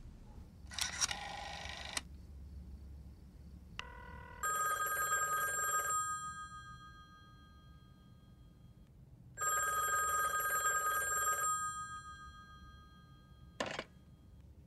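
Corded telephone's bell ringing twice, each ring lasting about two seconds and fading away. There is a short clatter about a second in and a click near the end.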